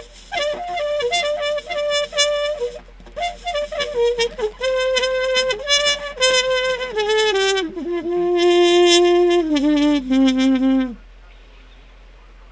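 Solo trumpet playing a slow melody of held and moving notes, the phrase stepping down to two low held notes and stopping about a second before the end.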